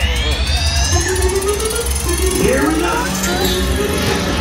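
On board a Slinky Dog Dash roller coaster train: music over a steady low rumble of the moving train, with a rising whine in the first second.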